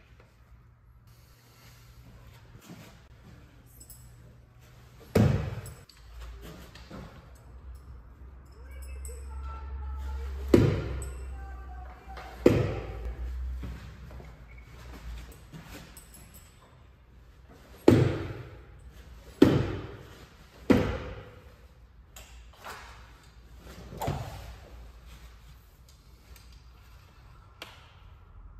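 Shuriken hitting a target board one throw at a time. Each hit is a sharp knock with a short ringing tail, about eight in all, with several coming in quick succession in the second half.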